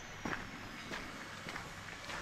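Footsteps on gravel: faint, irregular crunches, about four steps roughly half a second apart.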